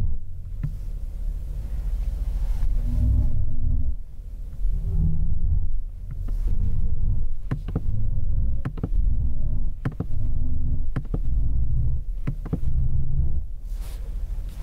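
BMW i7's synthesized drive sound in Sport mode, played through the cabin speakers: a deep electronic hum that swells and falls back in repeated surges, with faint higher tones over it. A few sharp clicks come in the second half.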